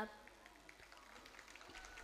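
Near silence in a hall: faint room tone with scattered faint clicks.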